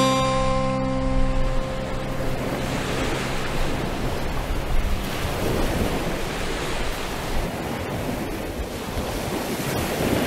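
A strummed acoustic guitar chord rings out and fades over the first two seconds, leaving a steady wash of sea waves on the shore with wind on the microphone.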